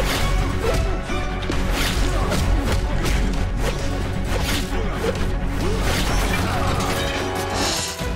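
Action-scene soundtrack: music with a heavy bass under a run of fight sound effects, punches and impacts landing about twice a second, with the odd whoosh.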